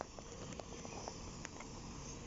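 Faint, distant double-decker bus running as it pulls slowly around, heard under steady outdoor background noise, with a few small clicks.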